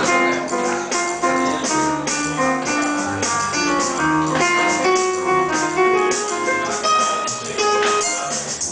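Small jazz group playing a bossa nova tune: a hollow-body electric guitar carries a single-note solo line over keyboard piano chords, an upright bass line and steady cymbal strokes from the drums.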